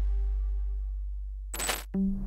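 Electronic logo-sting sound design: a deep bass tone fading away, then a short bright whoosh with a metallic shimmer about one and a half seconds in, cutting off sharply.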